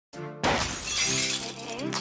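Glass-shattering sound effect about half a second in, fading over about a second, laid over sustained music chords in an intro sting.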